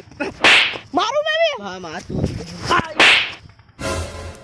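Two sharp slaps about two and a half seconds apart, with a short wavering cry between them. A brief rush of noise comes near the end.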